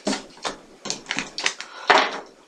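Tarot cards being handled and shuffled: a handful of short rustles and taps.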